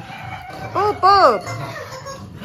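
Yellow squeaky rubber toy squeezed in a tug game with a dog, giving two quick squeals about a second in, each rising then falling in pitch.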